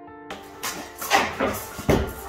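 Soft instrumental music, and from about a third of a second in, plasterboard sheets being lifted off a stack: scraping and rustling with several sharp knocks, one of the loudest near the end.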